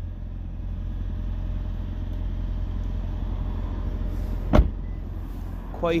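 A single sharp thump about four and a half seconds in as the boot lid (tailgate) of a 2019 Toyota Yaris hybrid is shut, over a steady low rumble.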